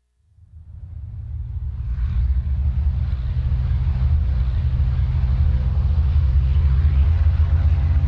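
A deep, steady rumble from a film soundtrack played over the room's speakers, fading in over about the first two seconds and then holding loud.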